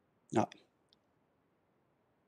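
A single short spoken word ("No") near the start, followed by near silence on the call line with one faint tick just under a second in.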